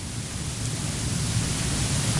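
Steady hiss of background noise, slowly growing louder.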